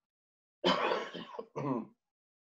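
A man coughing twice: a longer, harsh cough about half a second in, then a shorter one just after.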